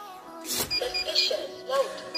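Automatic banknote counting machine drawing notes through with a sudden short whir about half a second in, followed by several short high beeps, over background music.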